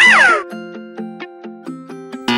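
A cartoon animal character's short, meow-like vocal cry, rising then falling in pitch, in the first half-second. Children's background music with light plucked notes continues underneath.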